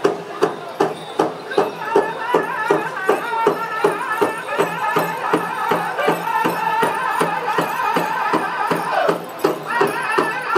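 Powwow drum group singing a dance song over a large shared drum, beaten in a steady rhythm of about three strokes a second, with high voices carrying the melody above the drumbeat.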